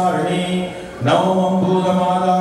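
A priest chanting Sanskrit mantras in a steady recitation tone, with a brief pause for breath a little before a second in.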